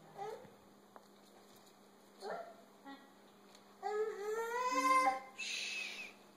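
A high-pitched voice whining: a couple of short whimpers, then one long, slightly rising whine about four seconds in, followed by a short breathy hiss.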